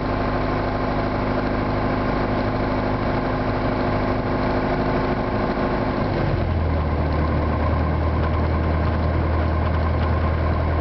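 Piper Warrior's four-cylinder Lycoming piston engine and propeller running steadily at low taxi power. About six seconds in, the engine tone steps down to a lower pitch as the power is eased back.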